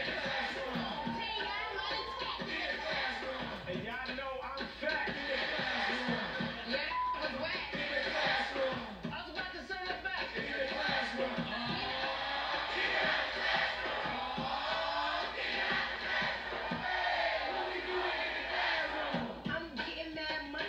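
Background music: a song with voices over the beat.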